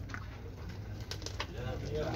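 A bird cooing faintly over a steady low background rumble and distant voices.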